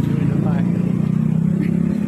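A motor vehicle's engine running steadily: a low, even drone.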